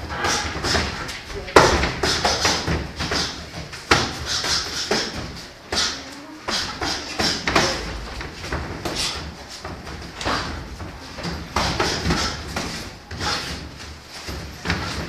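Boxing gloves thudding against bodies and gloves as two boxers spar at close range on the ropes: a string of irregular thumps in a large, echoing gym, the hardest about a second and a half in.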